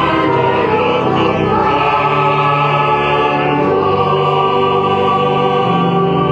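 Choir singing a hymn with organ, in long held chords: the entrance hymn that opens the Mass.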